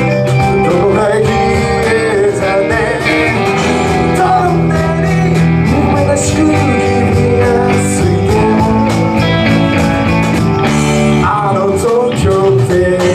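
Live rock band playing a song with electric guitars, bass guitar and percussion, with a sung lead vocal over it.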